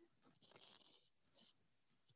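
Near silence, with faint brief rustling of clothing and handling as a person starts to get up and move.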